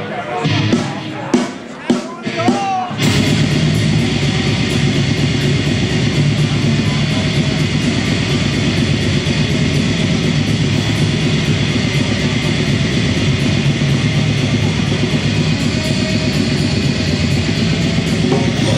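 Black metal band playing live: for the first few seconds there are voices close by, then about three seconds in the band crashes in all at once with a dense, fast, steady wall of distorted guitars and drums.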